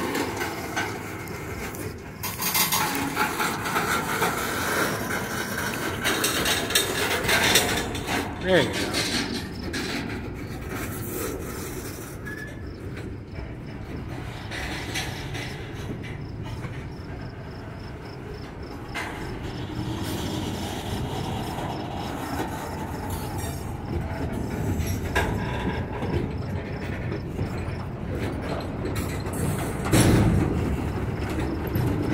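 Freight cars of a manifest train rolling past close by, steel wheels running on the rail, with a rasping grind of wheel flanges against the rail. It is loudest in the first several seconds, then settles to a steadier rumble.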